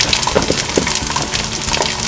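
Electronic sizzling sound effect from a toy grill, set off by pressing its button: a steady crackling hiss like food frying.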